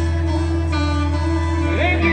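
A live band playing a slow instrumental passage: electric guitar notes over a steadily held low bass, with a note gliding upward near the end.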